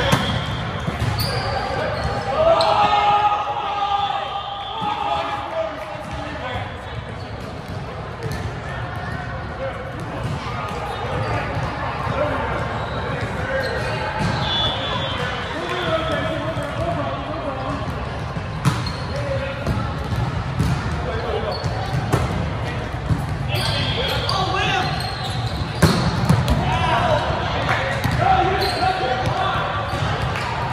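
Indoor volleyball being played: sharp smacks of the ball being hit, including a spike right at the start, mixed with players' shouts and chatter in a large echoing gym.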